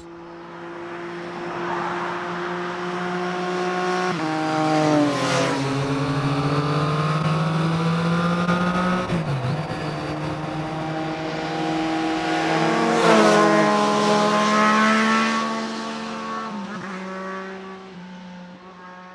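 Motorcycle engines running as the bikes ride past, each pass rising in level and dropping in pitch. The loudest passes come about five and thirteen seconds in, and the sound fades near the end.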